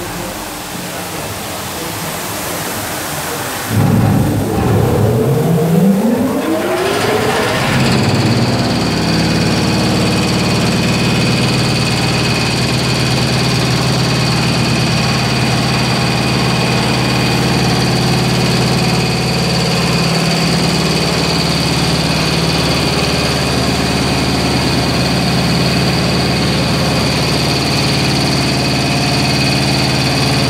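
Industrial carpet-washing machine: at first an even rushing hiss of water, then about four seconds in its electric drive starts and winds up in pitch over a few seconds before settling into a steady running hum with a thin high whine.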